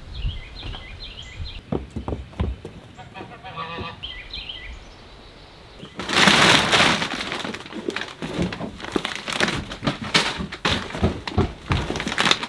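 Birds chirping with short repeated notes over quiet background; then, about six seconds in, loud rustling and crinkling of large plastic sacks being pulled and handled, with scattered crackles.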